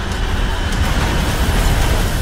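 Movie sound effects of large-scale destruction: a dense, steady rumble of crashing and falling debris, heaviest in the low end.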